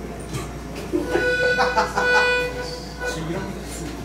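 Piano accordion sounding a held chord for about two seconds, starting about a second in, with talk and laughter around it.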